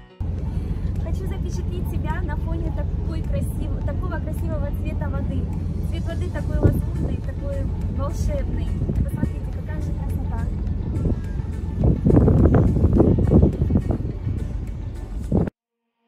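Steady low rumble on the open deck of a moving passenger boat, from the boat's engine and wind on the microphone, with voices over it. It grows louder near the end and then cuts off abruptly.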